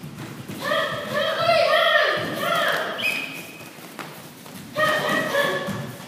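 High-pitched children's shouts, a run of short calls from about half a second in to about three seconds, and more near the end, over thuds of bare feet and strikes on foam mats.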